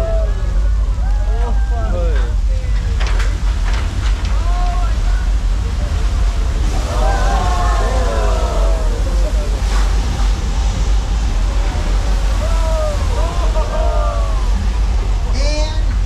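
Staged flash flood: a torrent of water surging down a paved street set, rushing steadily over a deep rumble. Several bursts of people's shouts and exclamations of surprise come and go.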